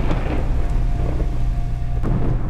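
Thunder-like rumble under a dense rain-like hiss: the storm sound effect of an animated logo intro with lightning.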